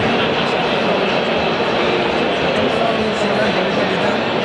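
Steady babble of a large crowd talking at once in a big hall, many overlapping voices with no single one standing out.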